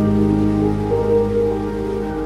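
Slow ambient background music with sustained held chords that shift about a second in, over a steady hiss like rain.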